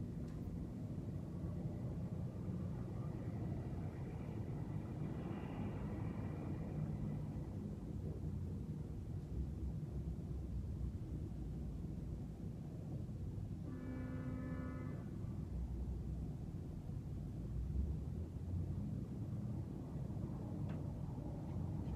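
Steady low rumble of background noise, with a brief faint horn-like tone about two-thirds of the way through.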